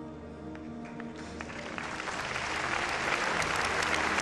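A congregation's applause starting about a second in and swelling steadily louder, over soft background music holding sustained chords.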